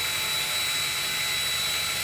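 Cordless drill running at a steady slow speed with a faint high whine, drilling an eighth-inch vent hole through a Walbro carburetor's metal metering plate.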